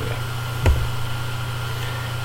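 Steady low background hum with a faint steady high tone above it, with one brief soft thump about a third of the way through.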